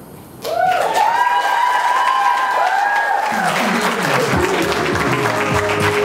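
Loud closing music starts abruptly about half a second in, opening with swooping, arching tones and joined by lower notes about three seconds in.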